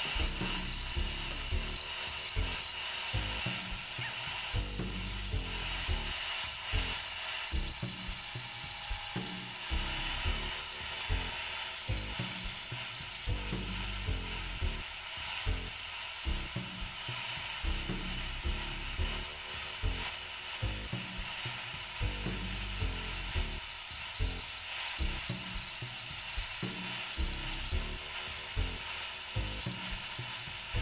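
Makita bandsaw running steadily while its blade cuts through a thick wooden blank, with a high even whine over the cutting noise.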